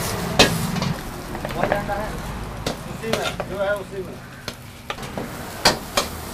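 Metal ladle clanking and scraping against a wok as rice is stir-fried, over steady sizzling. The strikes come irregularly, several a second at times, with a loud clank near the end.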